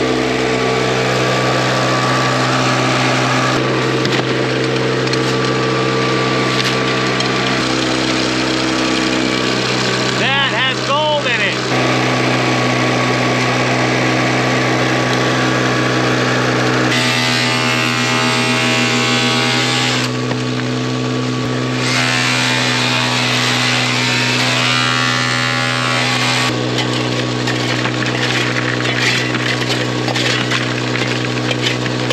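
The small gasoline engine of a Keene dry washer's blower running steadily at a constant speed, with its pitch shifting slightly a few times, while dirt is fed through the machine.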